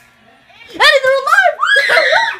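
A child screaming in high shrieks that waver up and down, starting just under a second in, in two long bursts.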